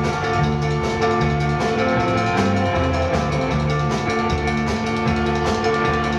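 Rock band playing live without vocals: drum kit keeping a steady beat under sustained electric guitar chords and a repeating low bass pattern.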